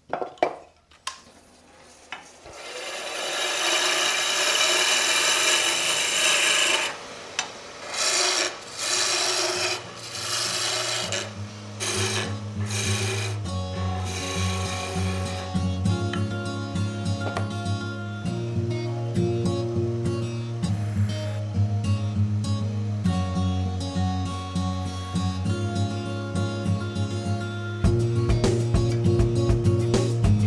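A turning tool cutting a spinning wood spindle on a lathe: a hissing scrape in several passes with short breaks, as the handle is shaped. From about ten seconds in, background music with a slow bass line takes over.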